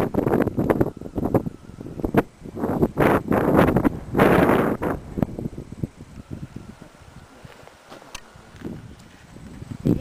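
Loud, irregular buffeting and rustling noise from wind and handling on the camera microphone, in bursts through the first half, then much quieter with a few faint clicks.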